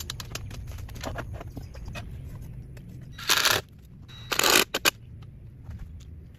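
Hand work on rebar and a wooden concrete form: small clicks and taps throughout, and two loud, short scrapes about a second apart in the middle, followed by a couple of sharp clicks.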